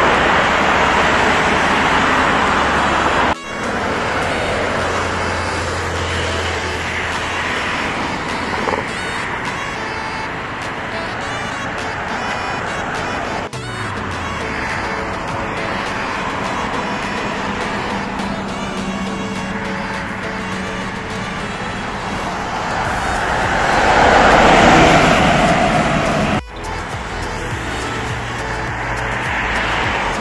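Steady road-traffic noise from a multi-lane road, with one vehicle passing close and loud a little after two-thirds of the way through. Background music sits under the traffic, and the sound breaks off abruptly twice where clips are joined.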